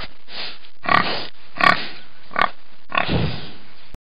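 A domestic pig grunting: about six short grunts in a row, cutting off suddenly at the end.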